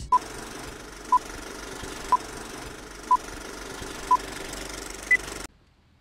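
Countdown beeps: five short beeps one second apart, then a single higher-pitched final beep, over a steady hiss that cuts off sharply just after. A sync countdown marking the start of playback.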